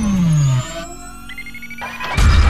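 Synthesized logo-intro sound effects: a loud falling sweep drops low and ends about half a second in, followed by quieter, thin high tones that rise slowly.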